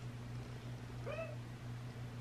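A pet parrot gives one short, weird call about a second in that rises and falls in pitch, the sort of noise it makes as it settles down for a nap. A steady low hum runs underneath.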